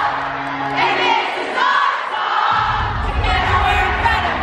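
A crowd of girls screaming and cheering over loud music. The music's bass drops out for about a second and a half in the middle, then comes back in while the shouting goes on.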